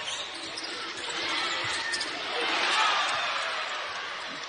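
Basketball dribbled on a hardwood court over arena crowd noise that swells about two seconds in and then eases off.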